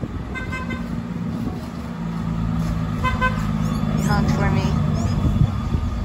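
A yellow privately owned bus passing on the road, its engine drone growing louder as it approaches. A vehicle horn gives two short toots, one about half a second in and one about three seconds in.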